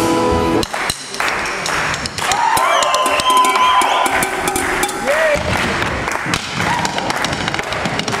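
Band music with accordion cuts off about half a second in. Then a man plays freestyle percussion with drumsticks on the objects around him, including the wooden dance floor: a run of sharp taps and knocks, with crowd voices behind.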